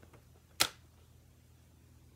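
A paper trimmer gives one sharp, loud click about half a second in as its cutting arm is pressed down onto the cardstock, with a few faint ticks of paper being handled.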